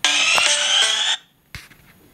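Smartphone ringtone for an incoming call, loud and bright, playing for about a second and then cut off suddenly as the call is declined. A single soft tap follows.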